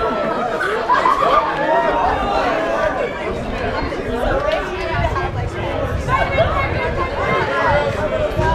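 Several people talking at once in overlapping, unamplified chatter, with a low rumble joining about five seconds in.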